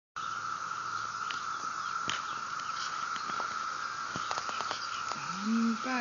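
Insects droning in a single steady, high tone, with a few faint scattered clicks over it.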